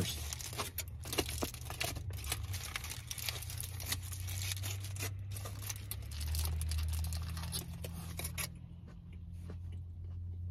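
Aluminium foil wrapper crinkling and rustling as it is handled around a burger during a bite. The crinkling stops about eight and a half seconds in, leaving softer chewing, with a low steady hum underneath throughout.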